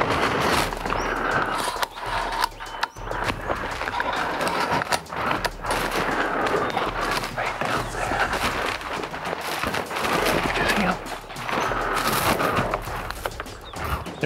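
Continuous rustling and handling noise close to the microphone, from clothing and gear shifting as a hunter settles a scoped rifle onto its bipod and holds his aim.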